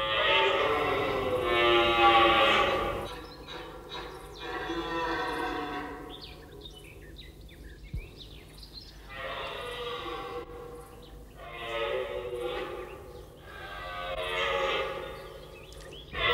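Red deer stag roaring in the rut: a series of long, drawn-out roars with short pauses between them. It is his rutting call, asserting his claim to the territory and the hinds.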